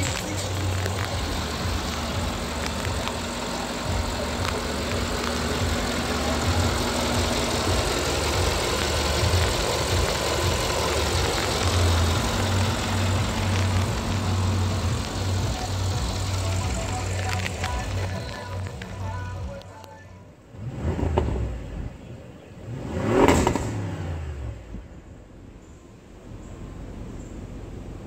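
Background music with a heavy, pulsing beat that stops about two-thirds of the way in. Then two short engine revs, the second louder, from the RS 7's twin-turbo V8.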